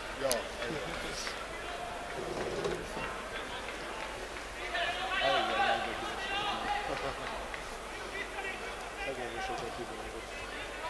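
Field-level sound of a football match: players shouting and calling to each other on the pitch, loudest about five seconds in, with a sharp ball kick just after the start.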